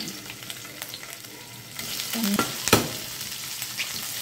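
Paneer cubes sizzling in hot oil in a stainless steel frying pan as more cubes are dropped in. The sizzle grows louder about two seconds in, with a few light clicks and one sharp knock shortly after.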